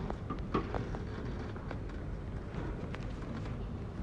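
Steady low room noise of an auditorium PA, with a few faint clicks and indistinct distant sounds.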